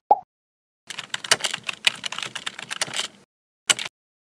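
Keyboard typing sound effect: a rapid run of key clicks lasting about two seconds, after two short pops at the start, with a brief burst of clicks near the end.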